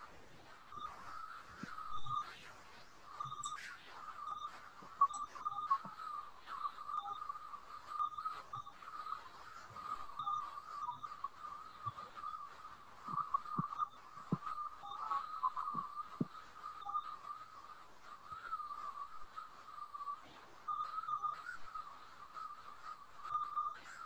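A faint, steady high-pitched whine that wavers slightly, with scattered faint clicks.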